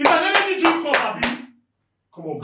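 Hands clapping fast, about six claps a second, mixed with a man's voice, stopping about one and a half seconds in.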